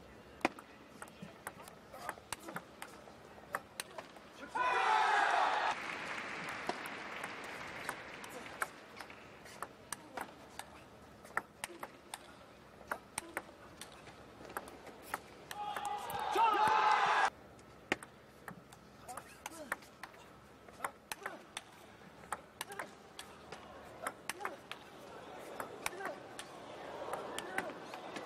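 Table tennis rallies: the celluloid ball clicking sharply off bats and table over and over. Two loud bursts of crowd cheering and shouting break out after points, about five seconds in and again around sixteen seconds, and crowd noise swells again near the end.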